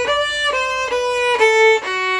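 Solo violin bowed in a short melodic phrase of held notes, changing about every half second and mostly stepping downward, the loudest note about one and a half seconds in.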